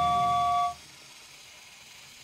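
A steam-train whistle for a model steam locomotive: one steady blast of a two-note chord that stops sharply under a second in.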